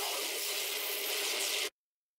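A steady white-noise hiss from an electronic music track cuts off abruptly near the end into a moment of dead silence.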